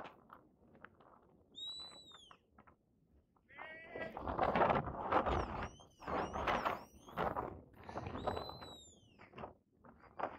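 A shepherd's whistle giving commands to a working sheepdog: a long arched note that rises and falls about two seconds in, a run of shorter gliding whistles around the middle, and another long arched note near the end. Bursts of rustling noise come between the whistles.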